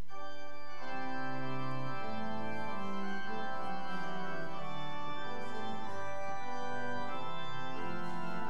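Organ playing a psalm tune in slow, held chords: the introduction before the singing.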